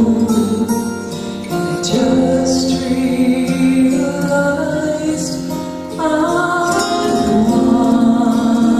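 A woman singing a slow gospel song into a handheld microphone, holding long notes, over instrumental accompaniment.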